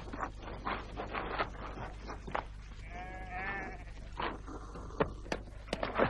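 A sheep bleats once, a wavering call about three seconds in, among scattered light knocks.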